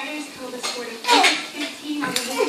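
Metal collar hardware jingling and clinking — a spiked collar, harness ring and hanging tag — as a puppy shakes its head tugging on a rope toy. A brief, falling, voice-like sound comes about a second in.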